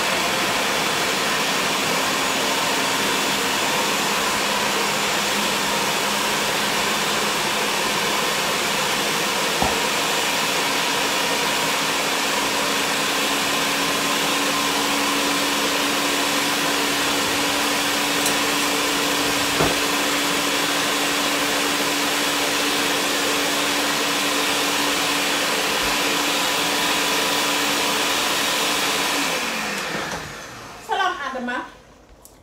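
A loud, steady electric appliance motor running with a constant low hum. It is switched on just before and cuts off abruptly near the end, with a couple of faint clicks along the way.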